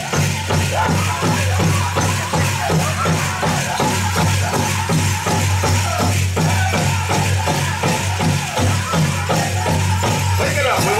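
Powwow drum group singing over a steady, even drumbeat of about three strokes a second, with the jingling of the metal cones on jingle dresses as the dancers pass.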